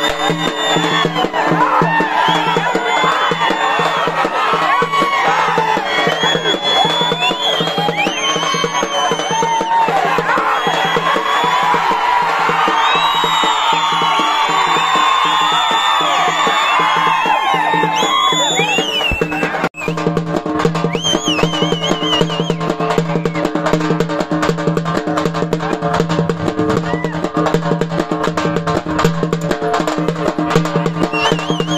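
Music with drumming over a steady drone, with many voices shouting over it for the first two-thirds; the sound breaks off for an instant about two-thirds through, then the music carries on with fewer voices.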